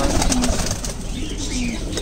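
Domestic pigeons cooing: a couple of short, low coos.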